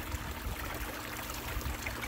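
Water running down an Angus Mackirk Mini Long Tom sluice and pouring off its end into the bucket below, a steady rush of water with a faint steady hum underneath.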